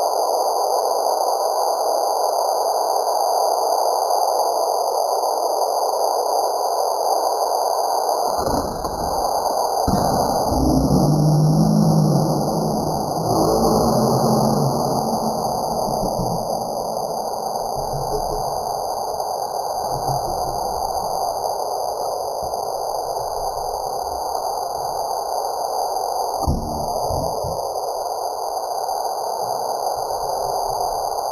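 Steady chorus of night insects: several shrill high bands over a continuous lower drone. Low rumbling thumps come between about 8 and 15 seconds in and again briefly near the end.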